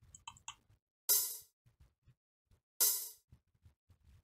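Soloed sampled cymbal from a drum loop playing back, struck twice about 1.7 s apart, each hit a bright splash that dies away within about half a second. The track's console-strip emulation is switched off, leaving the cymbal shaped only by a Waves Smack Attack transient shaper.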